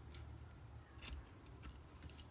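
A few faint clicks and small metal scrapes of needle-nose pliers gripping and working a brass butterfly plate in the bore of a Subaru tumble generator valve, the strongest about a second in.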